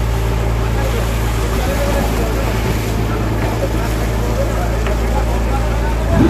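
A fishing boat's engine running with a steady low drone, with water rushing and splashing along the hull as the boat moves through choppy sea.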